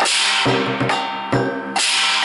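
Lion dance percussion: a large Chinese lion drum beaten with sticks in a quick rhythm, with hand cymbals crashing at the start and again near the end, and a hand gong ringing on between the strikes.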